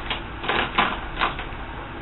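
Plastic lipstick tubes clicking and clacking against each other as they are picked out by hand, in a quick irregular run of sharp clicks that is thickest about half a second to a second and a half in.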